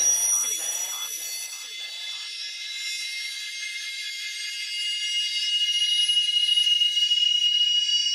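Outro of an electronic trance track: the kick and bass have dropped out, leaving a filtered rhythmic synth pattern that fades away in the first few seconds and high, sustained synth tones that swell slightly near the end.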